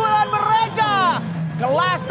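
Excited football commentator's voice calling a goal replay. The pitch drops steeply from high to low about halfway through, then climbs again near the end.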